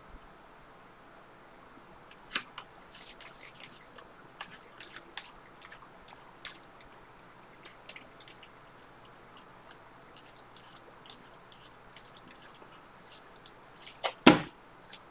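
A stack of Score football trading cards being thumbed through by hand: faint, irregular little clicks and slides of card stock as each card is pushed off the stack.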